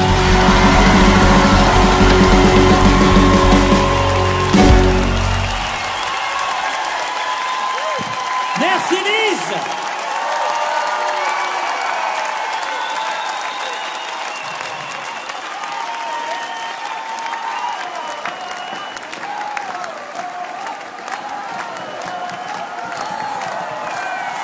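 Final bars of a pop song with a full band, ending about five seconds in. They give way to a live audience applauding and cheering, with voices over the crowd noise.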